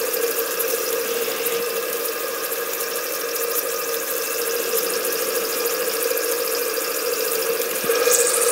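Maxwell Hemmens Max II model marine steam engine running steadily on low steam pressure, about 20–30 psi, with a constant hum and hiss from its loud boiler.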